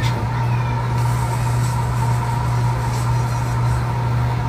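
A steady low hum with a faint constant high tone over it, unchanging throughout.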